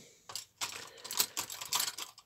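Light, irregular clicks and taps of small clear plastic model parts being handled on the cutting mat.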